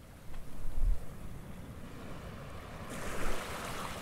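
Rushing ocean water and waves, with a low rumble that peaks just before a second in and a hiss that swells around three seconds in.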